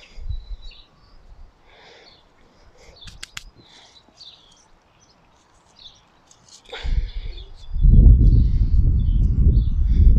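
Small birds chirping faintly in short scattered calls, with a couple of sharp clicks about three seconds in; near the end a loud low rumble sets in and covers everything.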